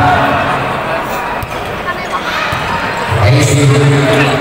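Volleyball being hit during a rally in a large indoor hall: a few sharp thumps of ball on hands and arms over a general crowd din. Loud, sustained crowd voices swell up again near the end.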